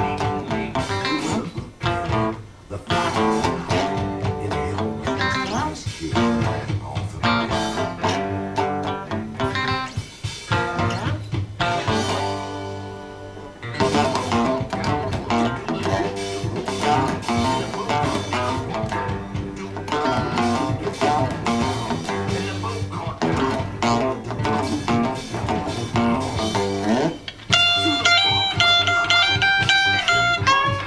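Electric guitar playing a choppy blues-rock riff, with a short lull of held, ringing notes midway and sustained high notes near the end.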